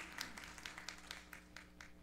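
Faint, scattered applause from a congregation, thinning out and dying away, over a steady low hum.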